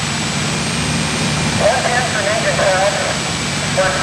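A steady low engine drone runs throughout, like fire apparatus running at the scene. Over it, a firefighter's voice comes through a two-way radio, thin and tinny, about halfway in and again near the end.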